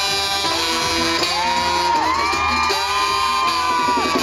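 Live Mexican banda music played by a brass band of trumpets, clarinets, sousaphone and drums, a mambo. Long, high held notes bend down at their ends over the steady beat.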